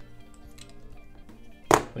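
Background music with steady held notes, over which plastic LEGO bricks click: a faint click at the start and one sharp, loud snap near the end as bricks are pressed together.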